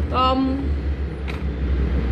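A steady low rumble throughout, with a short spoken sound near the start and a faint click in the middle.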